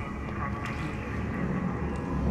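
Sci-fi spaceship cargo-bay ambience: a steady low machinery hum with indistinct voices in the background and a faint click or two.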